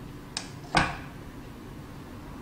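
Two short knocks, the second louder, as a nonstick frying pan is shifted on the gas stove's grate, followed by a faint steady hiss.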